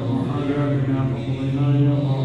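A man's voice chanting a prayer in long, drawn-out notes, low in pitch.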